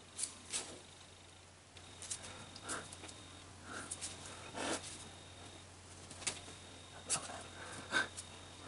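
Faint handling sounds: a plastic-film template being shifted and pressed flat onto an aluminium ring, giving soft scattered rustles and a few light taps over a low steady hum.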